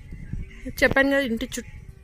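A woman's voice speaking a word or two about a second in, over low background noise.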